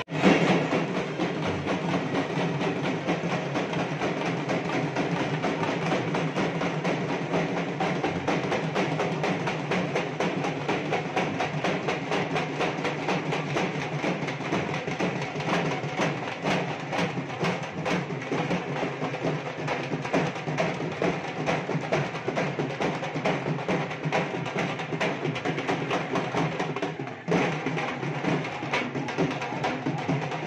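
Procession drums playing a dense, continuous rhythm, with a short break near the end.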